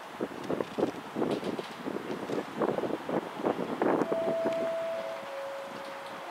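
LMS Stanier 8F 2-8-0 steam locomotive No. 48151 working slowly, its exhaust beats coming unevenly at about three or four a second. A steady high note starts about four seconds in and drops to a lower steady note about a second later.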